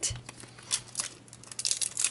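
A Pokémon card booster pack wrapper being crinkled and torn open by hand, a run of sharp crackles that grows denser near the end.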